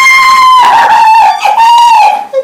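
A woman's long, high-pitched squeal of excitement and joy, with a short break about a second and a half in before a second, slightly lower squeal.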